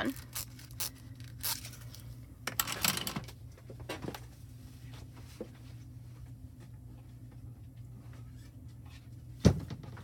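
Rustling and light clicks as rolls of hot foil are handled and laid down on a cutting mat in the first few seconds, over a steady low hum. About nine and a half seconds in comes one sharp thump, the loudest sound.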